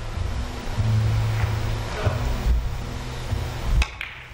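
Soft background music, then a single sharp click near the end as a three-cushion carom shot is played: the cue tip striking the ball or ball meeting ball.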